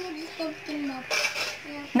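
Metal spoon scraping and clinking as the flesh of a small pumpkin is scooped out, with a louder scrape about a second in.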